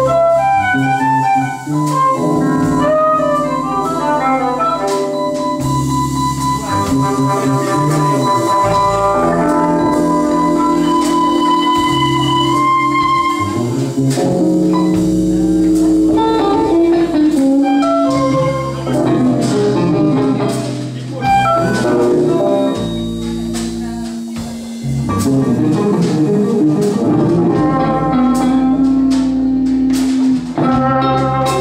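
Live improvised jam by a small band: bowed violin and electric guitars playing long held notes and winding melodic lines over electric bass, with drums.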